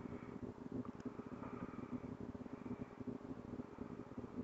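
Faint, irregular rustling and scratching of hands, yarn and a crochet hook working double crochet stitches, with a small click about a second in.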